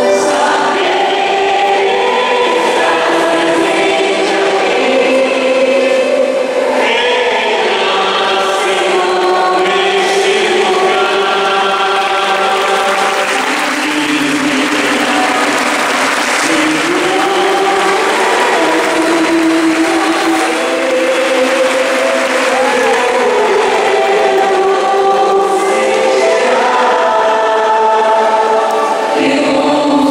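A choir singing a slow sacred hymn, holding long notes that change every second or two.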